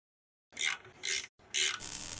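Scrubbing sound effect for a logo animation: three short brush strokes about half a second apart, starting about half a second in, the last running on into a longer rasp.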